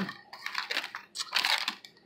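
Plastic packaging crinkling and rustling as it is handled, in two short bursts.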